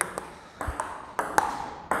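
Table tennis ball struck by paddles and bouncing on the table in a backhand drill: a string of sharp, light clicks, several of them about half a second apart.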